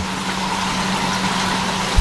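Steady running noise of an aquarium fish room: a constant hum from the air and water pumps under a hiss of water and rising air bubbles in the tanks, with a short bump at the very end.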